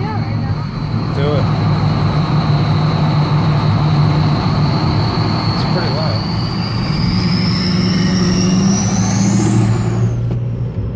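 Duramax diesel's turbocharger whistling, a steady high whine that climbs in pitch over the last few seconds as the turbo spools up under acceleration, over the low drone of the straight-piped diesel exhaust.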